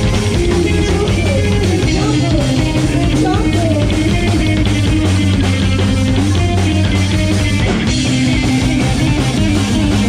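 Live punk rock band playing loud and without a break: electric guitar, upright double bass and drum kit.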